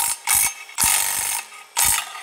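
Milwaukee Fuel cordless power ratchet running in four short bursts as it backs bolts out of an engine's flex plate at the crankshaft.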